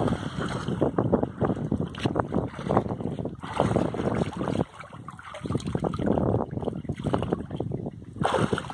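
Water splashing from swimming strokes and kicks in a small above-ground frame pool, in irregular bursts with a short lull about five seconds in.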